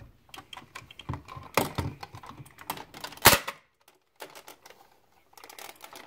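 Hard plastic Buzz Lightyear toy handled right at the microphone: irregular clicks and rattles of plastic, with one loud knock about three seconds in.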